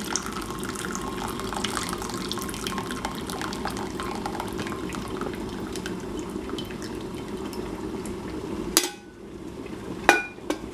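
Water pouring from a stainless-steel kettle into a bowl of tea, a steady splashing stream that stops with a sharp knock near the end.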